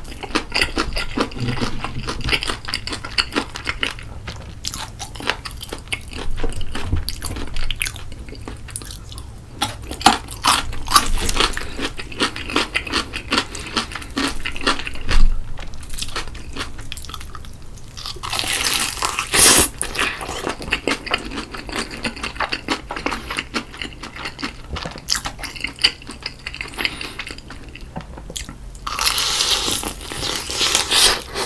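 Close-miked chewing and crunching of crispy fried chicken: the batter crackles in quick, irregular bursts as it is bitten and chewed, with louder crunches now and then.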